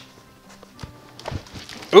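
Faint rustling and soft knocks of a folding fabric-covered photography lightbox panel being handled and flipped over, with a slightly louder knock just past halfway.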